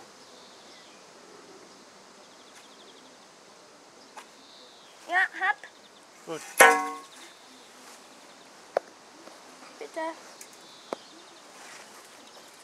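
A single sharp metallic clang about halfway through, a metal object struck against metal, ringing briefly before it dies away; a few small knocks follow.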